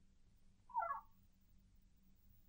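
Near silence, broken about a second in by one brief, faint pitched sound lasting under half a second.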